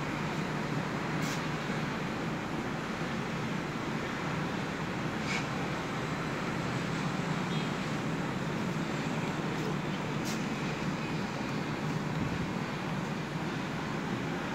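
Daikin VRV IV outdoor unit running with a steady low hum, its phase fault (error U1-04) corrected, with a few faint ticks.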